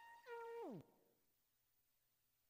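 A held electronic synthesizer note with a lower tone joining it, which slides steeply down in pitch and cuts off just under a second in, like a tape-stop; near silence follows.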